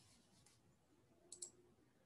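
Two small sharp clicks in quick succession, about a second and a half in, over near silence.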